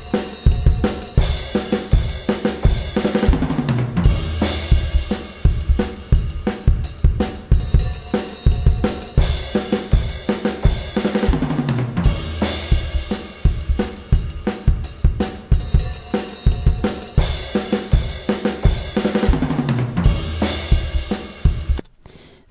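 Recorded acoustic drum kit playing a steady beat, played back through just two microphones: a single small-diaphragm condenser overhead summed to mono plus the kick drum mic, which gives the bass drum more low-end punch.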